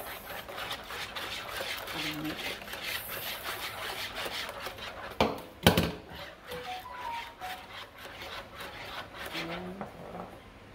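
Wire whisk beating a runny egg and milk mixture in a plastic bowl, a fast run of scraping strokes, with two sharp knocks about five seconds in.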